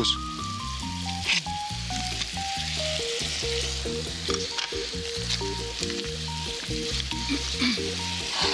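Steak pieces frying in a pan of balsamic sauce with a knob of butter, sizzling steadily. Background music plays underneath.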